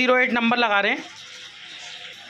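A man speaking Hindi for about a second, then a faint, even background noise with no clear event.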